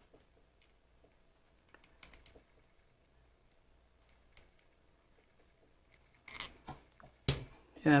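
Faint scattered clicks and taps of a plastic action figure and its plastic gun accessory being handled, as the gun is worked into the figure's hand, with one sharper click near the end.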